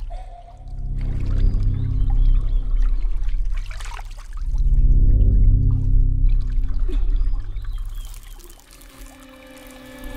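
Horror film score of deep, droning low tones that swell up twice and fade away near the end, mixed with watery swishing sound effects.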